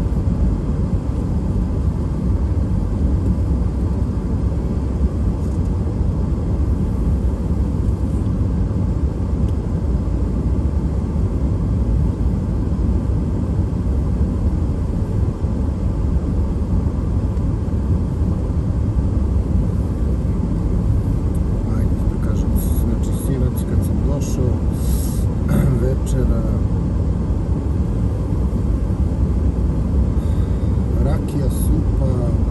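Steady road and tyre rumble with engine noise, heard inside a car's cabin while driving. A few brief clicks come near the end.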